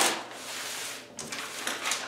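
Red-painted brown paper being torn and handled: a tearing rip fading out just after the start, then softer rustling and crinkling of the torn sheets.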